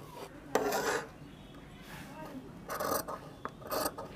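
Large tailor's shears cutting through shirt cloth on a table: a longer cut about half a second in, then two short cuts near the end.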